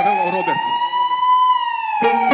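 Electronic keyboard lead note, bent up in pitch, held steady, then bent slowly back down near the end, alone with no drums under it.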